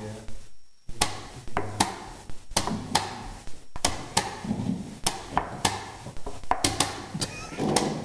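Wooden chess pieces clacking down on the board and the buttons of a digital chess clock being hit in turn, a quick, uneven series of sharp knocks and clicks, about a dozen in eight seconds, in fast blitz play.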